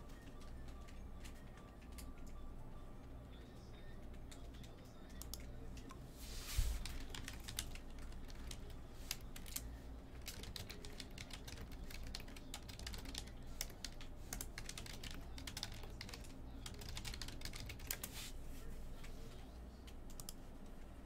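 Faint typing on a computer keyboard: irregular key clicks throughout, with one louder knock about six and a half seconds in.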